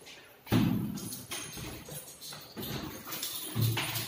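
A sudden thump about half a second in, then irregular footsteps and handling noises, and a door lever handle being pressed down near the end.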